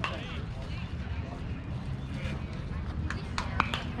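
Outdoor ballfield ambience: faint distant voices of players and spectators over a steady low rumble, with a few sharp clicks or knocks near the end.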